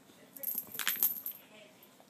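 Brief metallic jingle: a quick run of small clinks, starting about half a second in and lasting about a second.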